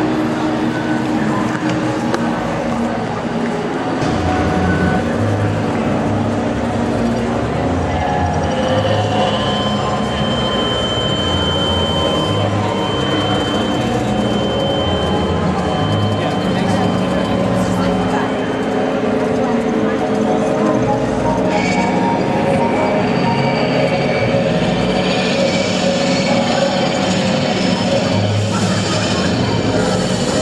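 Soundtrack of a video-monitor art installation played through its ring of screens, each running the same film out of step: a dense, steady mix of muffled voices and noise. A thin high tone holds for about ten seconds in the middle, and more high sounds come in near the end.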